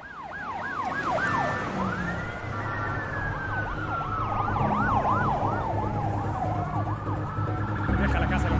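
Police car sirens from more than one car at once: fast yelping sweeps over a slower wail that rises and falls, growing louder over the first second.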